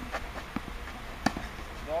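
A tennis racket strikes a tennis ball: one sharp pop about a second and a quarter in, with fainter short knocks around it.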